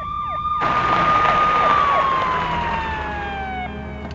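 A siren: one long held tone that slowly falls in pitch through the second half and cuts off shortly before the end, with a few short falling swoops and a rush of noise beneath it.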